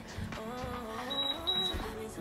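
Two short high-pitched beeps from a Gymboss interval timer, about half a second apart just over a second in, signalling the end of a 20-second work interval. Background music with a melody plays under them.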